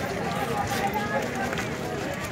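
Background chatter of several people talking at once, a steady babble of voices outdoors.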